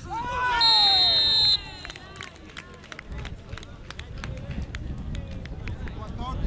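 Players yelling and cheering for a scored penalty kick, a loud burst of several voices falling in pitch. A high steady tone sounds over it for about a second, and scattered sharp clicks follow.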